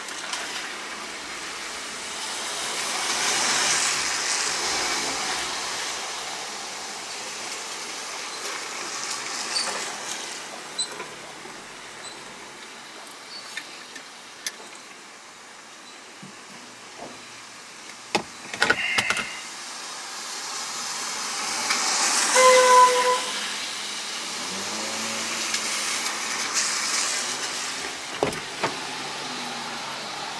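Traffic heard from inside a parked car: a tyre hiss that swells and fades as vehicles pass, twice, with a few sharp clicks and knocks of handling inside the cabin.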